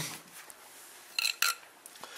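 Two short metallic clinks about a quarter second apart, a little past the middle, over faint room tone.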